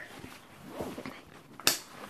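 The clasp on the flap of a fabric shoulder bag snaps shut with one sharp click about one and a half seconds in, amid soft rustling of the bag's fabric as it is handled.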